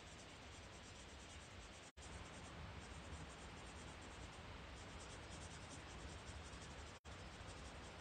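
Faint scratchy strokes of a marker being worked back and forth across paper while colouring in. The sound cuts out briefly twice.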